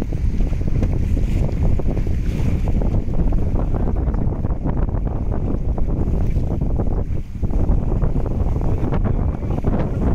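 Steady wind buffeting the microphone with water rushing and splashing along the hull of an inflatable rescue boat moving through fast-flowing floodwater; the noise dips briefly about seven seconds in.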